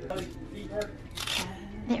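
Cardstock card holder torn open along its perforated strip: one short ripping sound a little over a second in.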